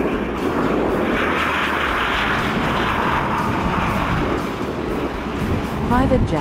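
Twin-engine business jet on landing approach, its turbofan engines giving a steady rushing noise that holds level throughout.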